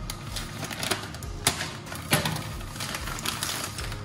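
Plastic bag crinkling and rustling as it is cut open with a knife and the packs inside are handled, with two sharper crackles about one and a half and two seconds in.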